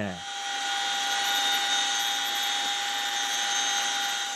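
Firefighting helicopter heard from aboard: a steady, high turbine-and-gearbox whine over rushing noise, unchanging throughout.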